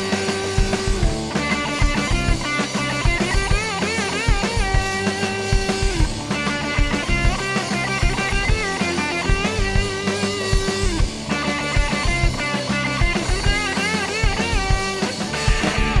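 A rock band playing live: distorted electric guitar over a drum kit, with the song cutting off right at the end.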